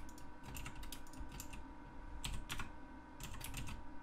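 Computer keyboard keystrokes, short clicks in three quick clusters: about a second in, around two and a half seconds, and again near the end.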